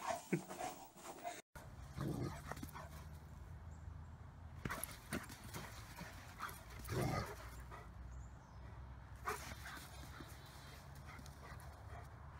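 Sounds of dogs at play: a pit bull indoors for the first second and a half, then, after a sudden cut, a golden retriever outdoors. In the second part a few short, scattered sounds come over a steady low rumble.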